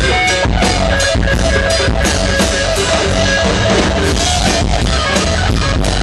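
Live rock band playing loudly: electric guitar over a drum kit keeping a steady beat, with no singing.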